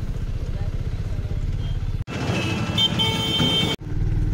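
Auto-rickshaw engine running steadily with a low pulsing rumble, heard from inside the cab. About two seconds in the sound cuts abruptly to busier street traffic with a vehicle horn sounding briefly, then cuts back to the rumble near the end.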